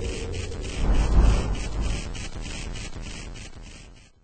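Logo-intro sound effect: a rough, noisy texture with a rapid regular flutter over a low rumble, swelling about a second in and then fading out.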